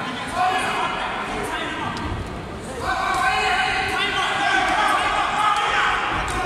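Men shouting at ringside during a boxing bout, in long held calls that grow louder about halfway through, over a few sharp knocks from the ring.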